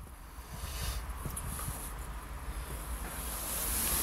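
Rushing noise with a low rumble from wind and handling on the camera's microphone, growing gradually louder toward the end.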